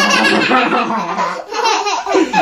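A young child laughing in a run of quick pulses, with a short break about one and a half seconds in.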